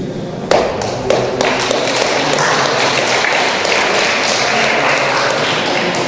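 Audience applauding in a hall: a few separate claps about half a second in swell into steady applause, which thins out near the end.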